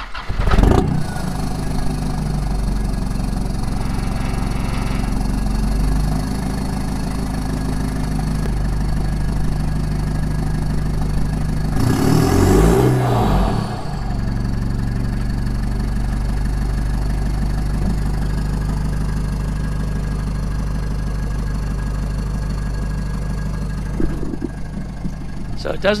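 Nissan Navara's 2.5-litre turbo-diesel engine starting and idling, heard at the tailpipe of a 3-inch straight-through exhaust with an aftermarket muffler newly fitted. About twelve seconds in the throttle is blipped briefly, then it settles back to idle. It doesn't sound a lot quieter with the muffler in.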